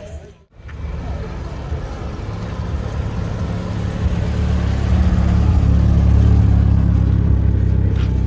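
Car engine running close by, growing louder from about a second in and loudest in the second half.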